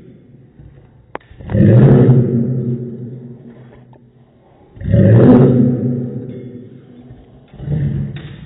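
A dog's barks played in slow motion, each stretched into a long, deep, pitched sound that starts suddenly and fades over a second or two: one about a second and a half in, one about five seconds in, and a third starting near the end.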